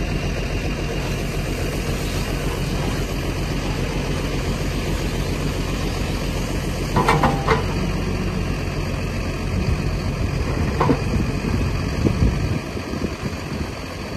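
Farm tractor engine running steadily at idle, with a short burst of clanks and squeaks about halfway through and another knock near eleven seconds.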